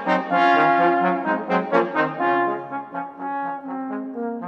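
Trombone quartet of three tenor trombones and a bass trombone playing a passage in four-part harmony, with notes changing several times a second. It gets quieter from about halfway through.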